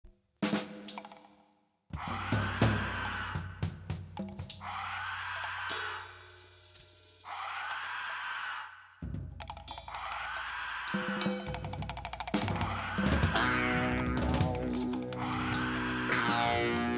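Opening of a heavy metal song: drum kit with snare, cymbals and bass drum over the band, easing off in the middle and coming back in louder about nine seconds in.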